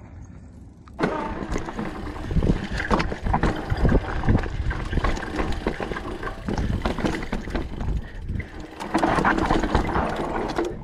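Mountain bike riding over rock and dirt trail, heard from a camera mounted on its handlebars: a rushing noise full of knocks and rattles from the tyres and bike. It starts abruptly about a second in, after a quieter stretch.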